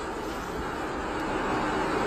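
A steady, even noise like a hiss or rumble, with no distinct events in it.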